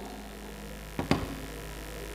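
Steady low electrical hum from the performance's sound system, with two quick sharp clicks close together about a second in.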